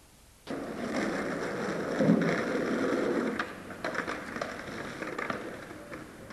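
Skateboard wheels rolling on rough asphalt, starting suddenly half a second in, with a heavy knock about two seconds in. Scattered sharp clacks follow and die away: the sound of a skateboard slam, the rider ending up on the ground.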